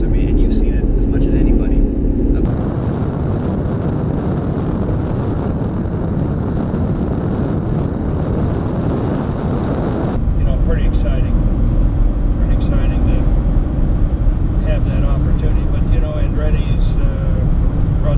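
Chevrolet Camaro SS pace car's V8 running steadily at cruising speed with road noise inside the cabin. About two seconds in the sound cuts to a louder, even rushing of wind and engine from the car on the track, then near the middle back to the steady cabin hum.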